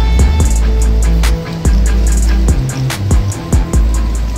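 Background music with a steady beat: bass, drums and guitar.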